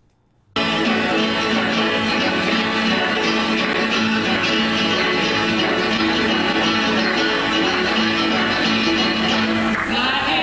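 Old live concert recording of a folk band on acoustic guitars and upright bass, cutting in abruptly about half a second in and playing steadily.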